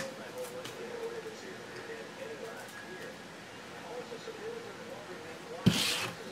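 Low room murmur with a faint voice in the background, then a short sharp tap near the end as the card in its plastic holder is picked up off the table.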